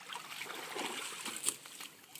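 Creek water splashing as an otter caught in a steel trap is hauled out of the shallow water onto the muddy bank, with one sharp knock about one and a half seconds in.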